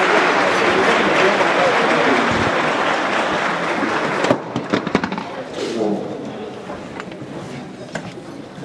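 Audience applause with voices mixed in, dense at first, then breaking up into a few scattered claps about four seconds in and dying away under chatter.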